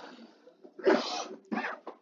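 A man coughs once, short, about a second in.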